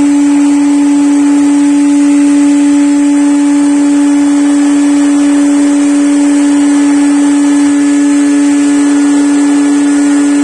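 Handheld electric blower running steadily: a strong, even motor hum over rushing air.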